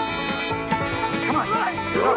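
Bluegrass-style instrumental theme music with a picked banjo. About halfway through, a voice-like sound with swooping pitch joins the music.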